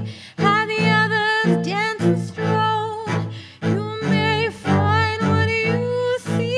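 Solo cello bowing a steady pulse of short low notes, about two to three a second. Over it a woman sings long held notes with a wide vibrato.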